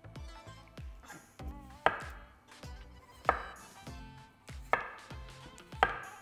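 Chef's knife slicing peeled raw potatoes into rounds on a wooden cutting board. The blade knocks on the board four times, a little over a second apart, over light background music.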